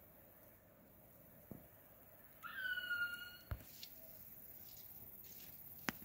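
A bird call: one high, steady whistled note about a second long, starting with a short upward flick, over faint outdoor hiss. Two sharp clicks follow, one just after the call and one near the end.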